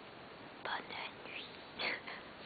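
Whispered speech: a few short hushed phrases.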